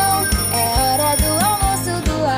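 A cartoon alarm-clock ring, a steady high ringing, over upbeat children's music with a steady beat; the ringing cuts off near the end.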